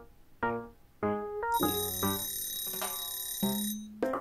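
Pomofocus web timer's end-of-break alarm ringing as the countdown reaches zero: a bright, steady ringing that starts about one and a half seconds in and stops just before the end. Background piano music plays throughout.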